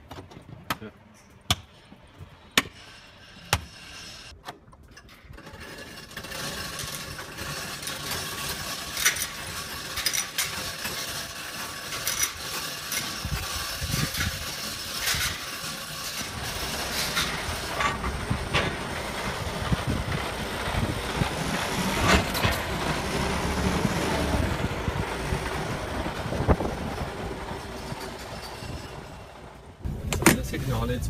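A few sharp clicks and knocks as a plastic trim panel is pressed back into place in a truck cab, then a denser wash of workshop and vehicle noise with scattered knocks that slowly grows louder.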